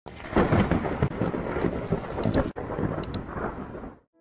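Rumbling thunder with a rain-like hiss and crackle, swelling and ebbing in loudness, with a brief cut about halfway through, fading out at the end.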